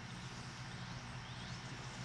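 Quiet outdoor background: a faint, steady low hum over a light, even hiss.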